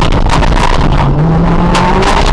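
Honda Civic rally car's four-cylinder engine running hard under acceleration, heard from inside the cabin, its note climbing about a second in. Gravel rattles and ticks under the car.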